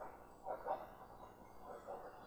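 Faint, soft rubbing sounds of a pen writing on an interactive whiteboard, over quiet room tone, with a few brief swells.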